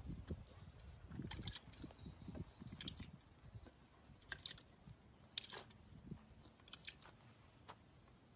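Faint outdoor ambience: a high, rapid pulsing trill comes and goes three times, over scattered soft clicks and rustles, with some low rumbling in the first few seconds.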